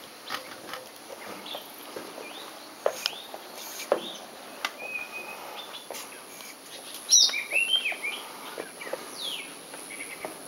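Several birds chirping and calling in short curved whistled notes, with a burst of louder calls about seven seconds in. A few sharp clicks come earlier, over a thin steady high-pitched hum.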